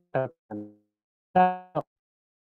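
Short low electronic tones from a screen reader on a computer, three in all, each dying away quickly, the loudest about a second and a half in. Between them come two very brief clipped blips of the synthesized voice cut off as keys are pressed.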